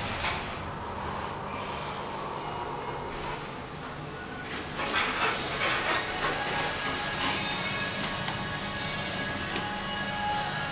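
Schindler hydraulic elevator doors sliding open about four and a half seconds in, with background music becoming audible as they open. A couple of sharp clicks follow near the end.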